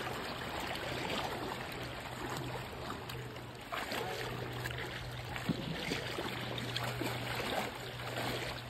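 Water sloshing and splashing around legs wading through shallow water, an irregular churning with small splashes, over a steady low hum.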